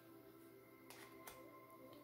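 Near silence: faint background music of steady held tones, with two soft clicks about a second in as the cards are moved.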